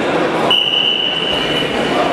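A single steady, shrill whistle blast, starting about half a second in and held for just over a second, over the continuous voices and noise of a crowd in a sports hall.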